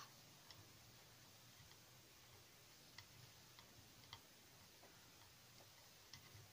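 Near silence: room tone with a few faint, irregular clicks.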